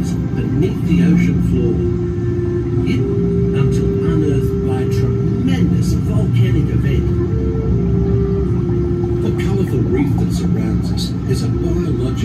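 Slow background music of held notes that step from one pitch to another, over a steady low rumble inside the submarine's cabin, with scattered faint clicks.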